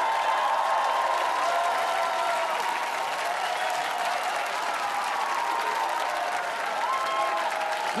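Studio audience applauding steadily after the song ends.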